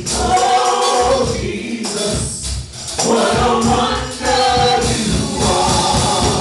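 Live gospel singing: a group of men sing into microphones with a steady beat and a tambourine. The voices drop out briefly about halfway, then come back in.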